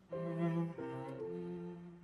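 Cello playing a soft classical phrase of three held, bowed notes, fading near the end.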